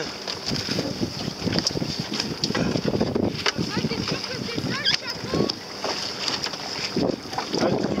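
Water sloshing and splashing against a small boat's hull in a series of uneven bursts, with wind buffeting the microphone.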